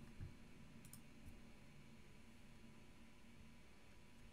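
Near silence: quiet room tone with a few faint clicks in the first second and a half.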